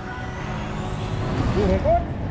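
Petrol dispenser pumping fuel into a scooter's tank, with a faint whine rising slowly in pitch over a steady low rumble of idling motorbikes. A short burst of voice comes near the end.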